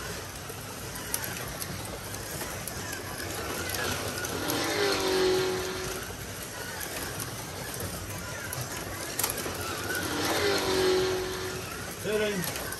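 1/24-scale Carrera digital slot cars running on a plastic track, their small electric motors whining. The sound swells twice, about six seconds apart, as a car passes close, its whine dropping in pitch and then holding.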